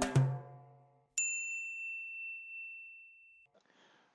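The last notes of the intro music, with a drum hit, ring out and fade in the first second. About a second in, a single bright ding, a high bell-like tone, sounds and fades away over about two seconds.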